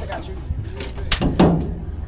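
A boat engine's low, steady hum under a short exclamation, with a few sharp knocks on the boat a little past the middle.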